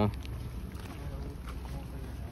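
Low, steady rumble of wind and handling noise on a hand-held microphone carried while walking, with a few faint ticks.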